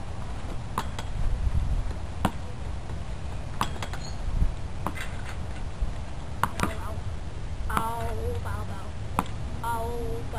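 Plastic bat hitting a swingball, a ball tethered to a pole: sharp, irregularly spaced whacks, about eight of them.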